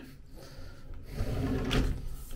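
A wooden sliding bathroom door rolling along its track: a low rumble that starts about halfway through, with a short knock near the end.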